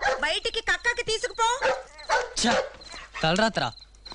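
A dog barking over and over, a quick run of high barks and yips.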